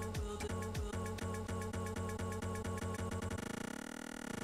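Daisy Seed DIY sampler/looper playing back a recorded audio loop while its loop length is shortened: the repeats come faster and faster. Near the end the loop is so short that it turns into a rapid buzz.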